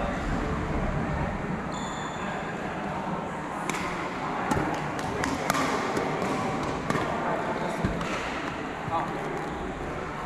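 Background chatter in a sports hall, with scattered sharp taps from about four seconds in: badminton rackets striking shuttlecocks during wheelchair badminton play.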